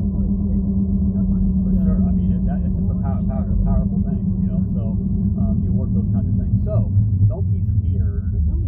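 Steady low rumble of a car cabin while driving, with indistinct talking over it.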